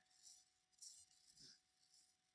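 Near silence: room tone with faint hiss.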